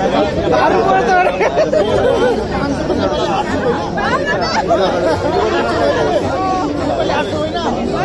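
Loud babble of a dense crowd, many voices talking and calling out over one another with no single speaker standing out.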